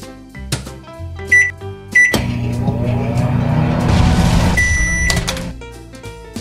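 Toy microwave oven's electronic sounds: two short beeps as its buttons are pressed, then a loud running hum for about three seconds that ends with a longer beep.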